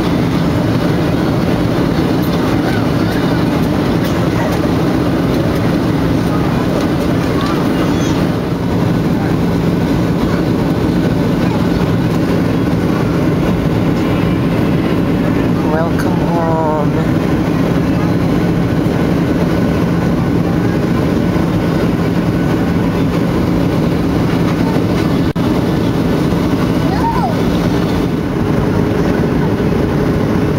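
Steady roar of a Boeing 737 airliner cabin in flight, jet engine and airflow noise with a constant low hum, heard from a window seat over the wing during descent.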